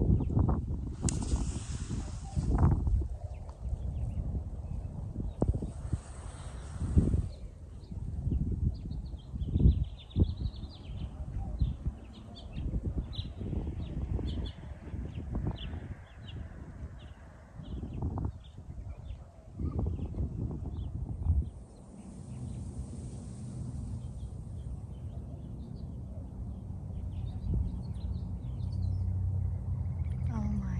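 Wind gusting on the microphone in irregular low buffets, with small birds chirping now and then. About two-thirds of the way through, the gusts die down and a low steady hum takes over.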